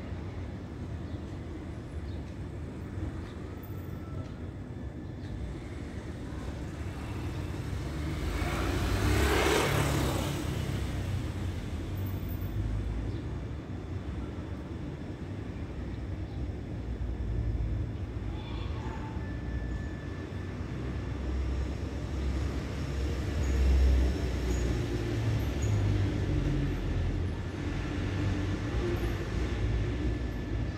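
Street traffic ambience: a low, uneven rumble, with one vehicle passing about nine seconds in, swelling and fading over a few seconds.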